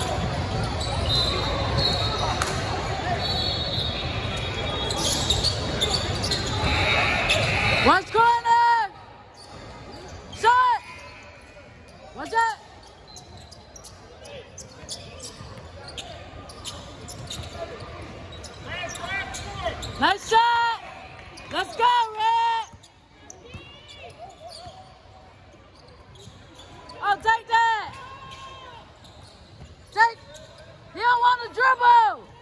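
Basketball game on a hardwood gym floor: sneakers squeaking in short, high chirps, several in quick runs, and a ball bouncing. For the first eight seconds a loud, dense wash of crowd and court noise covers everything, then drops away suddenly.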